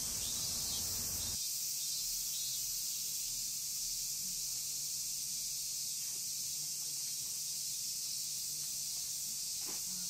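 Steady high-pitched insect chorus of summer, unbroken throughout, with a low rumble underneath that drops away about a second in.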